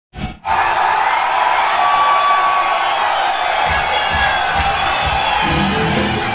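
A concert crowd cheers, screams and whistles as the band's song begins. Low beats from the band come in about halfway through.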